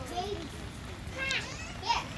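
Children shouting to each other during a football game. Two short, high-pitched calls come in the second half, the second one the loudest, over a low background of distant voices.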